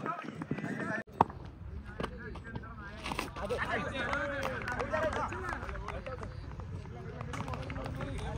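Several voices of cricket players and onlookers calling and chattering over one another, with one sharp knock about a second in.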